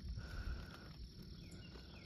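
Faint outdoor ambience: insects with a steady high-pitched buzz, a few faint chirps and a low rumble underneath.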